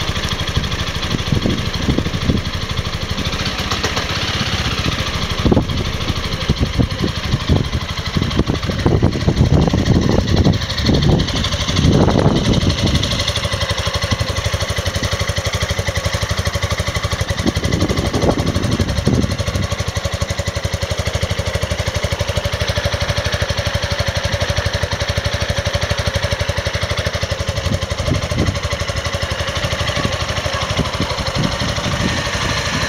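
Piaggio MP3 400 scooter's water-cooled four-stroke single-cylinder engine idling steadily. It grows heavier and louder for a few seconds around the middle, and again briefly a little later.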